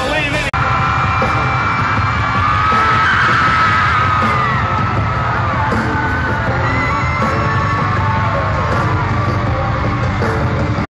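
Large arena crowd cheering and screaming loudly, many voices at once, with music playing underneath. The sound breaks off briefly about half a second in, at an edit.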